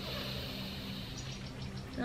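A woman's long, deep in-breath, strongest in the first second and then fading, with faint quail chirps in the background.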